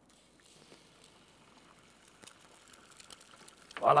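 Egg sizzling faintly in a hot frying pan, starting about half a second in as it is cracked into the pan, with a few small pops. A man's voice exclaims loudly near the end.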